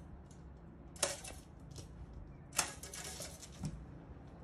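Faint, scattered light taps and clicks, a few each second, over a low background hiss.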